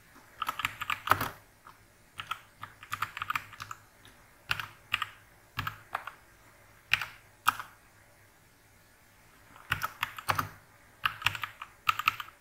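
Computer keyboard typing in short bursts of keystrokes with pauses between them, the longest pause lasting nearly two seconds past the middle.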